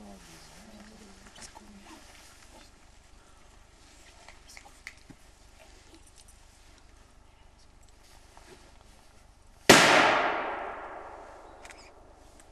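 A single gunshot fired to test a dog's reaction to gunfire: one sharp crack near the end, followed by a long echoing fade of about two seconds.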